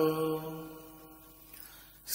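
A Buddhist monk's voice chanting Pali verse, holding the last note of a line, which fades away over about a second and a half into a brief near-quiet pause.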